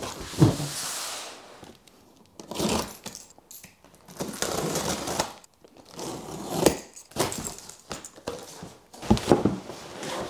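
A cardboard shipping box set down on a wooden desktop with a knock, then a utility knife scraping through the packing tape in several strokes, and the cardboard flaps and plastic wrapping being pulled open.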